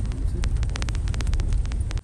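Car cabin noise while driving over a rough, stony dirt track: a steady low rumble from the engine and tyres, peppered with many sharp clicks and knocks from stones and rattles. The rumble drops off abruptly at the very end.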